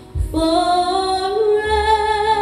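A young female voice singing solo into a handheld microphone. After a brief breath near the start, she holds one long note that steps up a little about a second and a half in.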